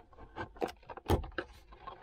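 Plastic dashboard vent and trim panel of a Volvo 240 being prised out by hand: a run of sharp clicks and knocks, about five of them, the loudest a little after the middle.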